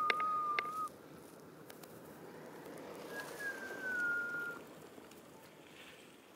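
A bird's clear whistled calls: a level note about a second long at the start, then a longer note that falls slowly in pitch a few seconds in, over faint outdoor background noise.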